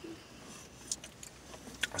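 Faint chewing of a venison jerky bar, with a couple of small clicks, over the quiet hush of a car's cabin.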